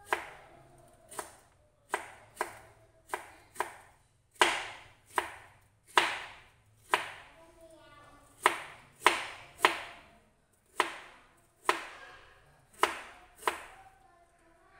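Kitchen knife slicing bamboo shoots into thin strips on a plastic cutting board. It makes about seventeen sharp chopping strikes at an uneven pace of roughly one a second.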